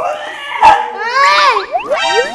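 Comic cartoon-style sound effects: a whining, animal-like cry whose pitch wavers up and down, then a few quick rising whistle-like swoops near the end.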